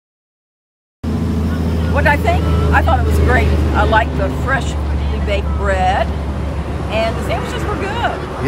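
A motor vehicle engine idling with a steady low hum, voices talking over it; the sound cuts in abruptly about a second in.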